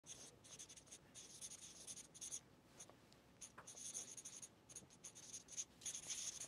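Faint scratching of a marker writing on paper, in a run of short strokes with brief pauses between them.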